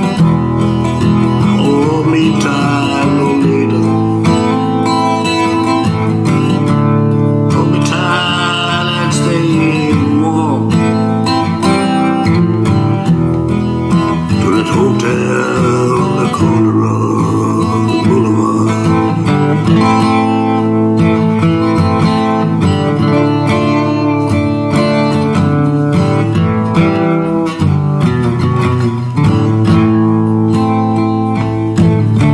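Steel-string acoustic guitar strummed in a slow country-blues, with a man's voice singing over it in stretches.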